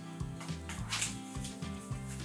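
Soft background music with a bass line.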